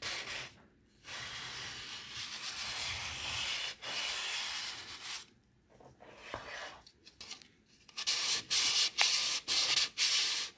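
Sandpaper rubbed by hand over the wood of a wooden salad bowl, sanding off the old varnish: one long continuous scratching stretch of about four seconds, then after a quieter lull a run of quick back-and-forth strokes, about four a second, near the end.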